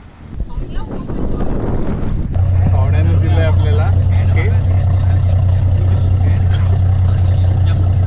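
Tour boat's engine running under way, a loud steady low drone that comes in about two seconds in, with voices over it.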